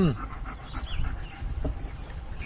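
A man's short falling 'hmm', then quiet swallowing as he drinks from a plastic water bottle. Faint bird chirps and a low wind rumble are in the background.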